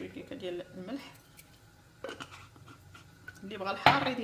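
Quiet, intermittent talking with pauses between, and one sharp knock just before the end.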